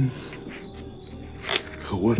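Heavily amplified handheld-camera audio: a steady hiss with a faint high tone, a sharp noisy burst about three-quarters of the way through, and a short voiced sound falling in pitch at the very end.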